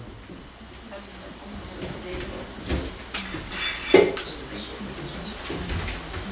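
Indistinct chatter of a seated audience in a small hall, with a few knocks and clatters, the loudest about four seconds in.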